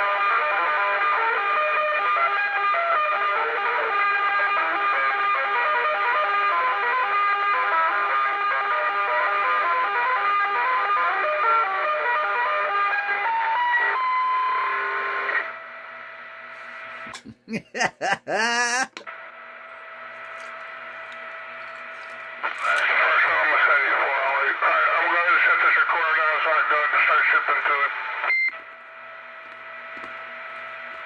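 CB radio traffic heard through the speaker of an old vacuum-tube CB base set. A guitar song is played over the channel for about fifteen seconds and cuts off. A short warbling sweep and a steady carrier hum follow, then a garbled voice for several seconds that ends with a brief beep.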